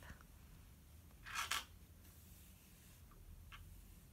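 Faint rustle of yarn being drawn through crocheted stitches with a tapestry needle: one short pull lasting about half a second, a little over a second in, then a couple of faint ticks.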